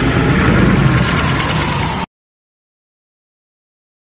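Wooden logs burning in a bonfire, a loud, steady rumbling noise that cuts off abruptly to silence about two seconds in.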